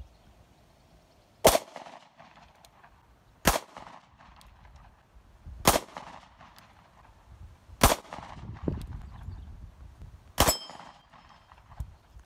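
SIG Sauer P938 SAS Gen 2 micro-compact 9mm pistol fired five times, single shots about two seconds apart.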